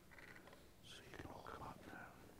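Faint whispered speech in a near-silent, echoing hall, with a few soft murmured words.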